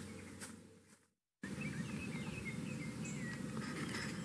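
Background noise cuts out briefly about a second in, then outdoor ambience returns with a quick series of short, faint bird chirps.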